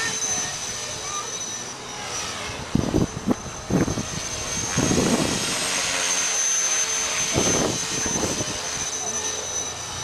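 Electric Blade 400 RC helicopter flying overhead: a steady high motor whine over the rotor's rush, with several louder surges about three, five and seven and a half seconds in.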